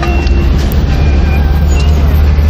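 Steady low engine and road rumble heard inside a small car's cabin as it drives.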